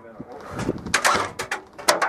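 Airsoft guns firing: a run of about five sharp single shots in the second half, uneven in spacing.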